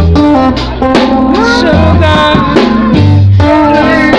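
A small live band playing loud, close up: electric guitars over a drum kit.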